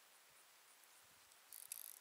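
Near silence, then about one and a half seconds in a fishing reel starts clicking rapidly, a fast ratchet-like run of clicks.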